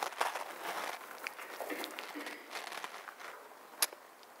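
Bible pages rustling as they are handled and turned, with a sharp click near the end.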